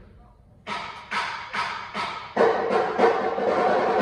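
A Japanese taiko drum ensemble beginning a piece: sharp claps or clicks on a steady beat about twice a second, joined about two seconds in by a held, pitched sound as the music builds.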